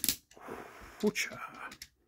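A man's voice making breathy, hissing mouth noises with a short voiced sound about a second in, followed by a few light clicks of plastic toy parts near the end.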